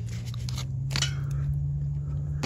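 A few sharp clicks of plastic seed pots being handled, over a steady low hum.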